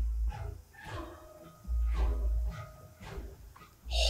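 Space-battle sound effects from the TV episode's soundtrack: two deep low booms about two seconds apart, with faint music underneath.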